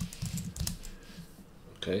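Computer keyboard keystrokes: a quick run of several key clicks in the first moments, then quiet.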